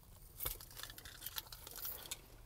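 Faint rustling and scattered small clicks from handling inside a pickup's cab, with a soft knock about half a second in. The engine has not been started.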